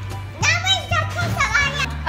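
A young child's high-pitched voice, talking loudly, over background music.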